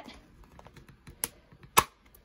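Logan Dual Driver Elite framing point driver working as its handle is squeezed: a few light clicks, then a single sharp snap near the end as it drives a metal framing point into the wooden frame.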